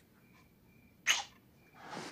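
A single short, sharp burst of breath through the nose or mouth about a second in, against a quiet room.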